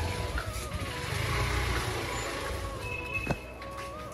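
Motorbike riding noise: a low rumble of engine and wind on the microphone. Background music with a slow melody plays over it, and there is one sharp click near the end.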